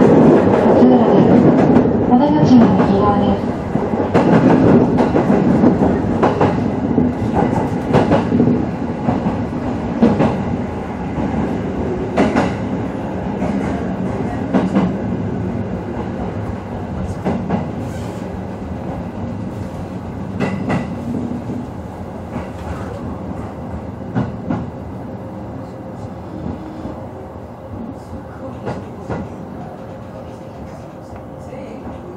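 A 209 series electric train braking into a station and drawing to a stop. The wheels click over rail joints and points, the clicks spacing out, while the running noise fades steadily.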